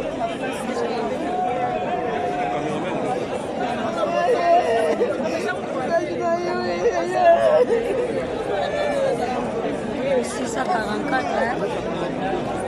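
A crowd of many voices talking and calling over one another, with drawn-out, wavering cries among them: mourners weeping aloud.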